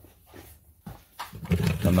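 A quiet room with a faint click from handling a tool on a wooden bench. Then, in the last half second or so, a man's low voice starts up, drawn out on one pitch as he begins to speak.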